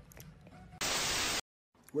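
A short burst of white-noise static, about half a second long, starting just under a second in and cutting off abruptly into dead silence. It is a TV-static transition effect between two clips. Before it there is only faint room sound.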